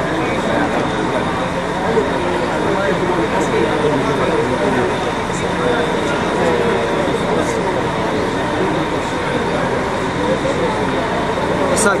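Indistinct voices talking steadily, unintelligible, with a faint steady hum underneath.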